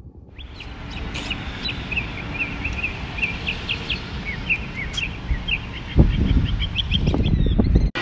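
Small birds chirping over and over in short calls above a steady outdoor hiss. From about six seconds in, loud low rumbles of wind buffet the microphone until the sound cuts off suddenly.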